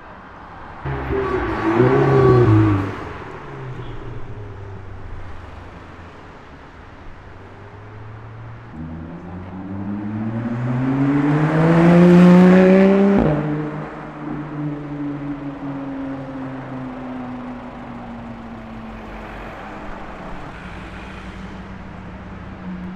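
Sports car engines on the street: a short rev about a second in, then a Porsche 911 accelerating past with a loud, rising engine note. Its pitch drops abruptly about two-thirds of the way through, and a lower note fades away slowly after.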